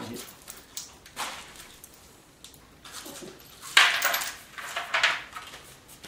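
Small flint flakes and chips clinking and clattering as they are handled and picked up around a shattered flint core on a stone anvil, with a louder burst of clatter a little past halfway.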